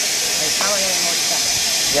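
A steady high-pitched hiss, with a short spoken word about half a second in.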